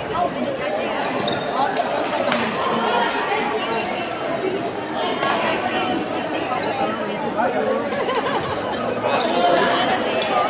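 Many voices chattering in a large, echoing sports hall, with occasional sharp clicks of badminton rackets hitting shuttlecocks, one louder about two and a half seconds in, and short high squeaks of court shoes on the floor.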